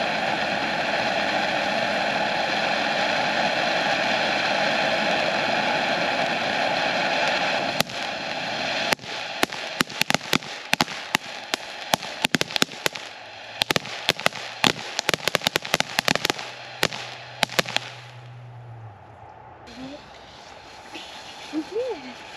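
Consumer firework fountain spraying with a steady, loud hiss. About eight seconds in it switches to its crackling effect: dozens of sharp pops and crackles that thin out and stop around nineteen seconds in as the fountain burns out.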